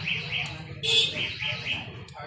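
A bird chirping over and over, about four short falling chirps a second, with a single sharp metallic clank about a second in.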